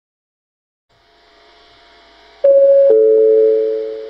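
Two-note descending chime from a station platform PA speaker, a high tone followed about half a second later by a lower one that rings out with a slight echo: the lead-in chime of an automated next-train announcement.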